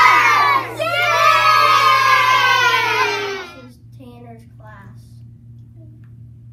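A class of young children shouting together in unison, answering with the word that the letters spell. A second long, drawn-out group shout follows just under a second in and dies away about three and a half seconds in, leaving a few faint voices.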